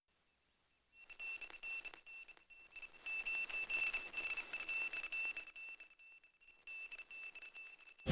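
A faint, steady high-pitched tone over a soft hiss, coming in about a second in and fading out near the end.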